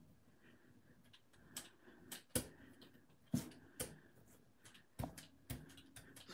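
Small brayer rolling acrylic paint across a gel printing plate, faint, with several short sharp clicks and taps scattered through as the roller is set down, lifted and worked back and forth.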